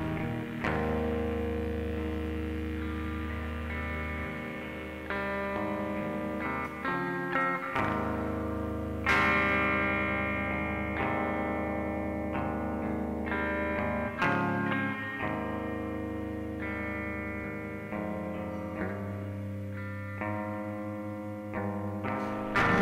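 Instrumental passage of a lo-fi rock demo: guitar chords played through effects and left to ring, with a new chord struck every second or two.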